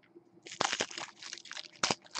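Foil wrapper of a Prizm Draft Picks trading-card pack being torn open and crinkled by hand: a run of crackling rips and snaps starting about half a second in.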